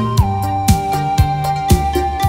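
Instrumental passage of a quan họ folk song in a modern arrangement, with no singing: a long held melody note over a bass line and a kick drum beating about twice a second.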